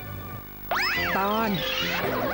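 Soft background music, then about two-thirds of a second in a high, voice-like cartoon call that swoops steeply up in pitch and falls back, over the music.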